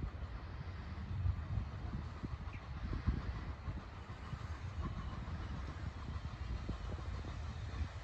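Wind buffeting the microphone outdoors: an irregular low rumble in gusts, over a faint steady hiss.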